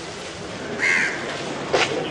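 A crow cawing once, a short harsh call about a second in, over steady outdoor background noise. A sharp knock follows near the end.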